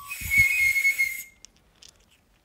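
A loud burst of hiss carrying a high, wavering whistle tone, lasting just over a second and then cutting off, with a low thud near its start.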